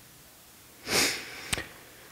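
A man's quick, sharp intake of breath close to the microphone about a second in, followed shortly by a single short click.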